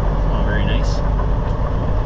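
Semi truck's diesel engine running at low speed as the truck rolls slowly, heard inside the cab as a steady low rumble. A brief hiss comes about a second in.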